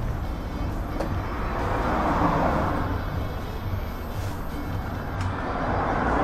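Bashi XFX electric motorcycle rolling slowly over concrete: a steady rumbling hiss that swells about two seconds in.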